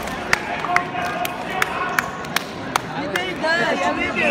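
Busy sports-hall background of voices, with a run of sharp slaps or claps about two to three a second echoing in the hall.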